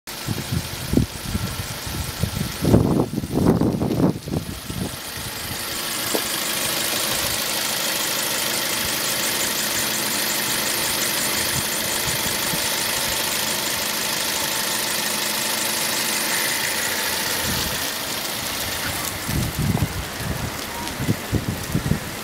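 Toyota Corolla Verso's four-cylinder VVT-i petrol engine idling steadily, heard close up over the open engine bay. Irregular low thumps from handling or wind come in the first few seconds and again near the end.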